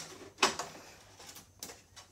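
A few light clicks and knocks of a plastic RC truck body shell being handled on a table: one about half a second in and a couple near the end, otherwise quiet room tone.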